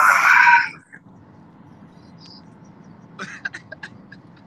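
A man's loud, strained groan, cut off under a second in. Near the end comes a short run of sharp clicks.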